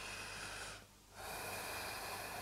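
Faint breathing of a woman holding downward-facing dog, a soft, even rush of air broken by a short silent gap a little under a second in.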